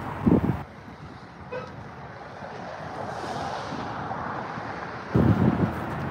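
Steady outdoor vehicle noise, with wind rumbling on the microphone in two short gusts: one about half a second in and one near the end.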